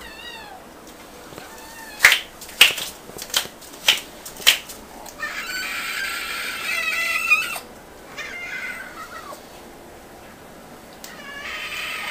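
Kittens meowing to be fed: short high-pitched meows, a long drawn-out meow in the middle and more meows near the end. About two to four seconds in there are five sharp clicks, which are the loudest sounds.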